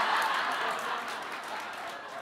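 Audience laughing and applauding after a punchline, the sound dying away.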